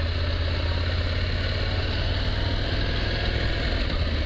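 Adventure motorcycle's engine running steadily at low speed with a deep, even hum as the bike rolls along.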